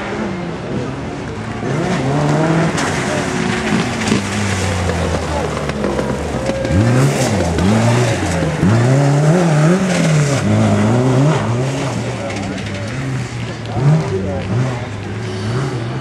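Off-road rally buggy's engine revving hard on a dirt track, its pitch climbing and dropping again and again as the driver works the throttle and gears, loudest around the middle.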